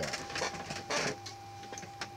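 Bubble wrap and plastic packaging crinkling in a few short bursts, the loudest about a second in, then quieter.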